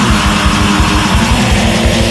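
Heavy metal band playing: distorted electric guitar and bass over drums, with fast, evenly spaced kick-drum strokes.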